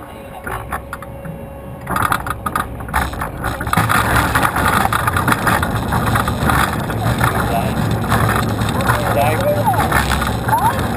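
Roller coaster train running along its steel track, heard from a camera mounted on the car: a quieter start, then from about two seconds in a louder steady rumble with wind noise on the microphone.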